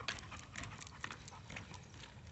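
Faint, irregular ticks and scuffs of a pit bull's claws and paws on asphalt as it walks on a leash.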